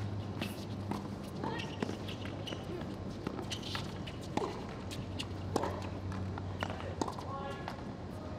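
Tennis rally on a hard court: rackets striking the ball and the ball bouncing, sharp hits about every half second to a second, with players' footfalls, over a steady low hum.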